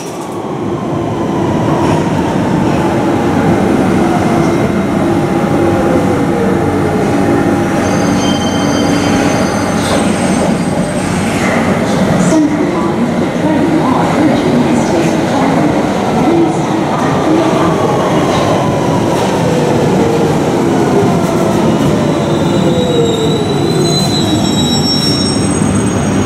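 London Underground S Stock trains braking at the platform: a motor whine falls slowly in pitch over several seconds, twice, over a steady rumble of wheels on rail. Thin high wheel squeals come in near the middle and again near the end as a train draws to a stop.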